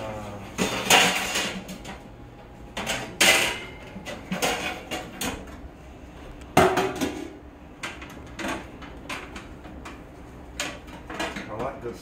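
Kitchenware clattering: dishes, pans and utensils knocking together, with three louder clanks that ring briefly, about a second, three seconds and six and a half seconds in, and lighter clicks between.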